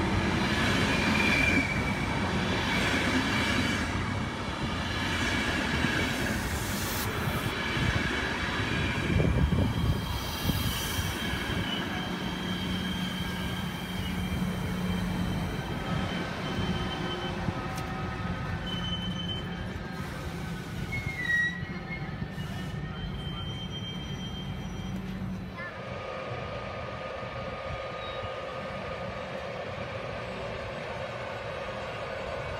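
ÖBB Railjet passenger coaches rolling past on the rails, with faint high-pitched wheel squeal partway through. Near the end the sound changes to a quieter, steady hum.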